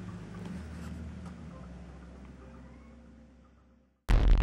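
Faint room tone with a low steady hum, fading out to silence near the end.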